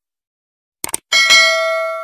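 Subscribe-button sound effect: two quick mouse clicks, then a notification bell struck twice in quick succession, ringing on and slowly fading.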